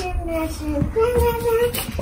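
A young child singing wordlessly in a high voice, holding and sliding between notes, with a couple of faint low knocks underneath.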